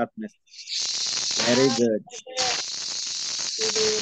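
Loud hiss from an open microphone on a video-call line, starting a moment in, breaking off briefly midway and coming back, with faint, unclear speech underneath.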